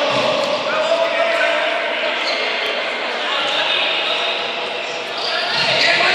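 Futsal ball being kicked and bouncing on a hard indoor court, with a few sharp knocks, amid players' shouts and spectators' voices echoing in a large sports hall; the voices grow louder near the end.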